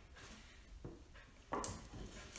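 Quiet handling noise from hands on a box: a faint tap a little before halfway, then a short scrape near the end as the hands slide from the lid to grip its sides.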